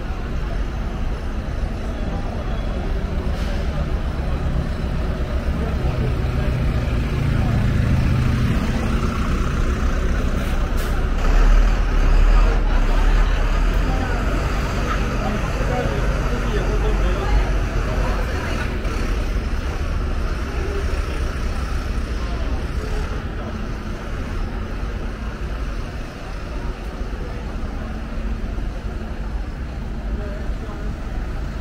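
Busy street traffic, with bus engines rumbling close by, heaviest about twelve seconds in, over a steady wash of road noise and passersby talking.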